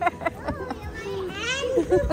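Indistinct voices of people talking, with a brief higher-pitched voice about one and a half seconds in.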